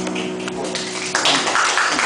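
An acoustic band starting a song: a single held note, joined about a second in by strummed acoustic guitar and percussion.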